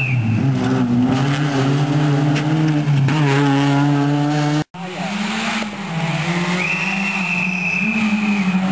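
Rally car engine running hard at high revs, the note climbing and then dropping as it shifts gear. The sound cuts off abruptly a little past halfway, where the footage is edited, and an engine note carries on after the cut.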